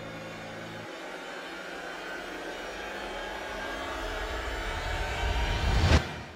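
Title-sequence sound design: a low drone cuts off about a second in, then a noisy whooshing riser builds steadily louder and peaks at the very end.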